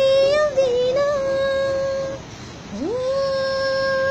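A woman singing unaccompanied, holding one long steady note, breaking off about two seconds in, then sliding up into another long held note.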